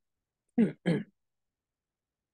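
A man's voice making two brief vocal sounds in quick succession about half a second in, such as a short throat-clearing.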